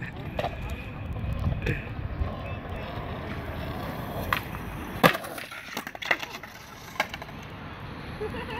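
Skateboard wheels rolling on concrete as a skater ollies down a stair set, with a sharp pop and then a loud smack of the landing about five seconds in. A smaller clack comes near the end.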